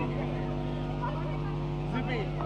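A steady low hum with many even overtones, unchanging throughout, with faint voices over it.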